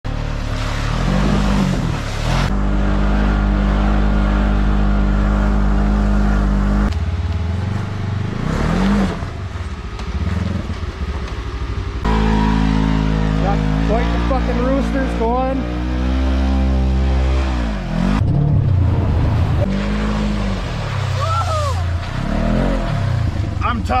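Side-by-side UTV engines running hard through mud, holding steady revs and then rising and falling in pitch. The sound changes abruptly every few seconds as one clip cuts to the next, with people's voices in the middle and near the end.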